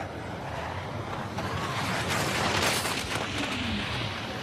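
Downhill racing skis hissing and scraping over the hard, icy course at high speed. The rushing noise swells to its loudest about two and a half seconds in, then eases off.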